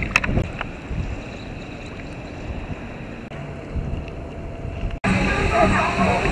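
Soft, steady wind and water noise from a foam float on calm sea water. About five seconds in, it cuts abruptly to a louder crowd scene with voices.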